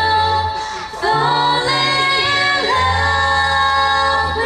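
An a cappella vocal group singing a slow ballad in close harmony, held chords over a low sung bass line. About a second in the voices break off briefly, then come back in on the next phrase.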